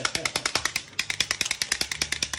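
A plastic pull toy clicking rapidly and evenly, about a dozen sharp clicks a second, as its mechanism runs after being pulled.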